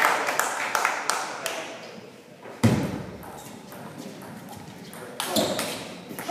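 Table tennis ball clicking off bats and the table, each click echoing in a large sports hall; a single loud thud comes about two and a half seconds in, and quick clicks of a rally start near the end.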